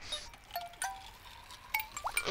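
Synthesized chime-like sound effect: a few scattered tinkling pings, one tone held for about a second in the middle.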